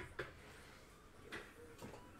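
A few faint, short clicks and rustles of trading cards and packs being handled on a table, over a low steady hum.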